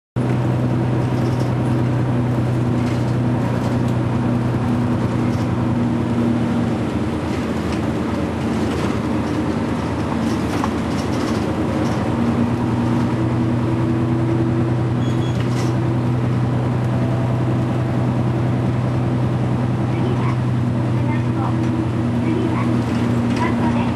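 Diesel engine and road noise of a moving route bus, heard from inside the passenger cabin: a steady low drone over a continuous rumble.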